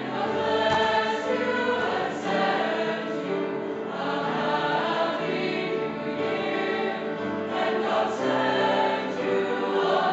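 Mixed choir of young female and male voices singing together in parts, holding chords that change every second or so.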